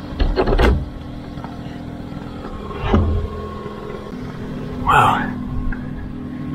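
Metal sliding bolt on a weathered wooden door clacking as it is drawn back, a quick cluster of sharp clicks about half a second in, then a dull knock about three seconds in. A steady low hum runs underneath.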